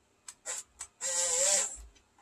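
Huina 1572 RC crane's electric rotation motor starting and stopping in jerky pulses: three short blips in the first second, then a whirring run of under a second with a wavering tone that fades out near the end. This is the jumpy rotation of the stock on/off controls.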